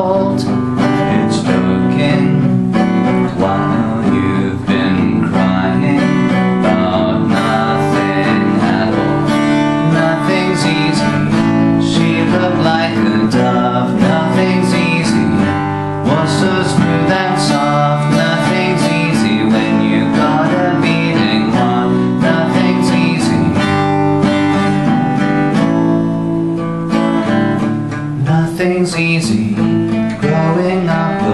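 Acoustic guitar strummed in a steady run of chords.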